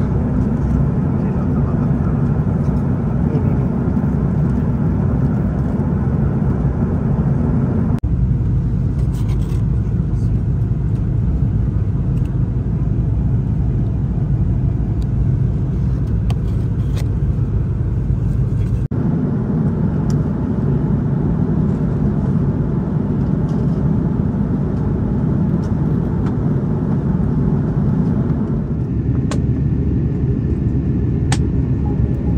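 Steady airliner cabin noise: the low rumble of engines and airflow inside an Airbus A330 in flight, changing abruptly about 8 and 19 seconds in. In the middle stretch a few light clicks and rustles come from a cardboard breakfast box handled on the tray table.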